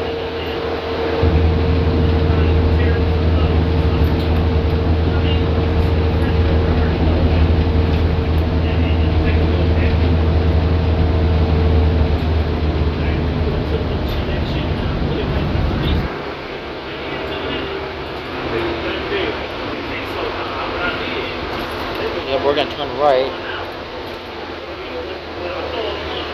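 City transit bus heard from inside the passenger cabin: the engine picks up into a loud, low drone about a second in, with a steady whine alongside. The drone cuts back suddenly about two-thirds of the way through as the bus eases off.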